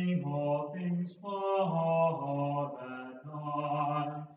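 A single voice chanting without accompaniment, in held notes that step up and down in pitch, with a short break about a second and a half in.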